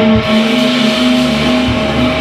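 Live rock band playing: electric guitars hold a steady, sustained chord over bass drum beats.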